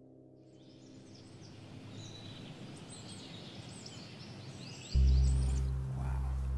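Birds chirping and twittering over a steady outdoor hiss, fading in over the first second. About five seconds in, loud low background music comes in suddenly.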